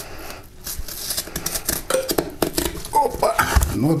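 A knife cutting along the back of a large grass carp, with irregular crisp clicks and crunches as the blade slices through the scaled skin and flesh and over the rib bones.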